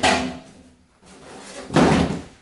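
Large cardboard moving box being handled roughly: a loud hit at the start that dies away, a quieter rustle, then a second sudden loud thump near the end.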